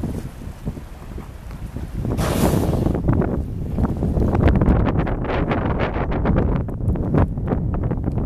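Wind buffeting the microphone, a heavy low rumble with irregular crackles that grow denser from about three seconds in. A short hiss sounds a little over two seconds in.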